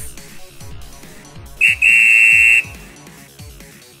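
Background music, cut through about two seconds in by a whistle: a short pip, then a loud, steady, high blast lasting under a second, marking the end of the segment.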